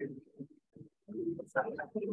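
Quiet, indistinct conversation among people, words too low to make out, with a short pause about a second in.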